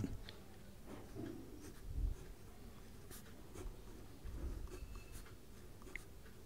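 A pen writing on paper: faint, irregular scratching strokes as handwritten letters are formed, with a soft low bump about two seconds in.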